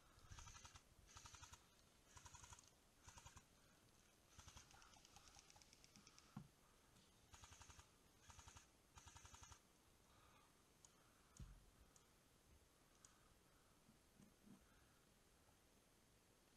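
Faint bursts of rapid full-auto airsoft gunfire, about eight short strings of quick clicks in the first ten seconds, the longest lasting about a second and a half. A couple of single dull knocks follow later.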